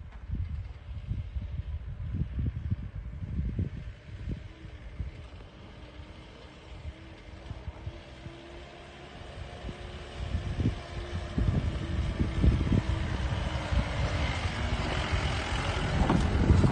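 A jeep running along a rough dirt road, with irregular low rumbling and buffeting throughout. A faint steady engine hum comes through in the middle, and road and tyre noise grows louder over the last few seconds.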